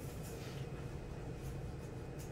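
Pens or pencils scratching on paper as students write notes, in faint short strokes over a steady low room hum.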